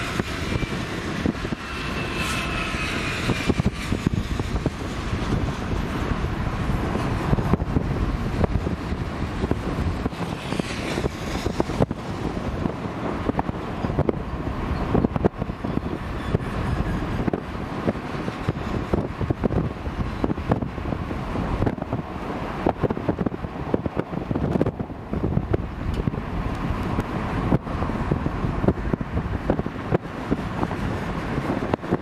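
Freight train passing close by: BNSF diesel locomotives running at the start, then a steady rumble of steel wheels on rail with frequent sharp clicks as the double-stack container and trailer cars roll past. Faint high squeals come and go in the first few seconds and again about ten seconds in.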